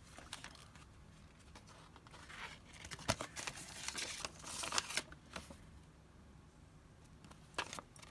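Soft paper rustling and crinkling as small paper inserts are drawn from an envelope and a folded printed sheet is opened out, with a couple of sharp crackles.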